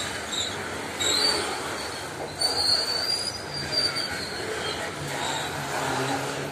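Loaded grain hopper wagons of a long freight train rolling past close by with a steady rolling rumble. The steel wheels give high, thin squeals about a second in and again for about a second starting around two and a half seconds.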